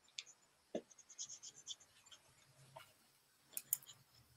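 Faint scratching and light clicks of a paintbrush being worked over small molded relief pieces, with a few sharper taps, the loudest near the end.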